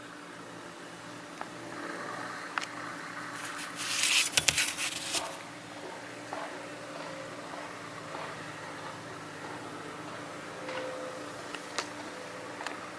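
Steady background machine hum, with a few light clicks and a brief burst of rustling, clicking handling noise about four seconds in as the knife is handled close to the microphone.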